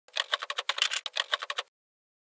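Typing sound effect: a quick run of about a dozen key clicks, roughly seven a second, stopping about three quarters of the way through, as text is typed out letter by letter on screen.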